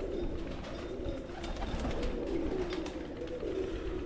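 Domestic pigeons cooing in a loft, several low, overlapping coos repeating throughout.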